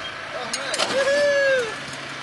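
A small farm tractor running as it tows a tracked trailer, with a few sharp clanks about half a second in and a drawn-out rising-and-falling call near the middle.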